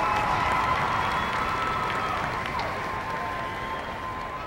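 Audience applause and cheering from a large crowd, fading away steadily as it goes on.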